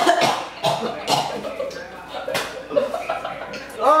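Several harsh coughs in the first two and a half seconds, with gasps between, from the burn of very spicy ramen noodles in the throat.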